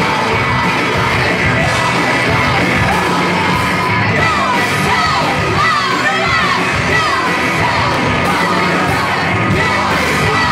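Live rock band playing loudly: electric guitars and drums, with a woman singing into the microphone.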